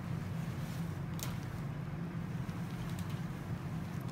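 Steady low hum of background room noise, with one faint click about a second in.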